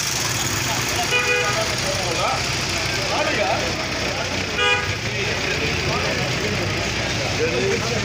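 Two short vehicle horn toots, about a second in and again about halfway through, over a crowd of marchers talking and a steady low street rumble.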